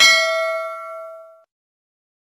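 A single bell ding, the notification-bell sound effect of an animated subscribe button as the cursor clicks the bell icon. It strikes once and rings out, fading away over about a second and a half.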